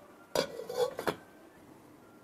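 Steel pan lid being handled: two sharp metal clanks about 0.7 s apart, with a brief scrape and ring between them.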